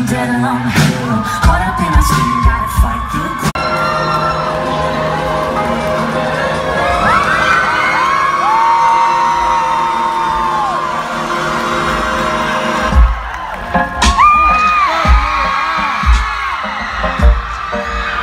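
Live electro-pop band playing loudly through a festival PA, recorded from the audience: drums for the first few seconds, then a long drumless stretch of held high notes over a sustained pad, and the kick drum comes back about 13 seconds in. Crowd whoops are mixed in.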